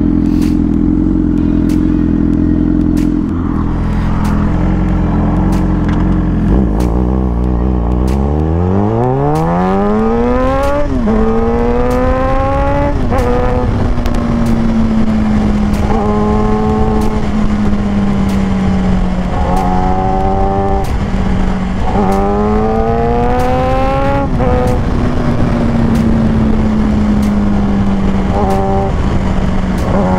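Suzuki GSX-R sportbike engine idling, then pulling away about eight seconds in, its revs climbing and dropping back at two quick upshifts. It then settles into a steady cruise with wind noise, easing off and picking up again a few times.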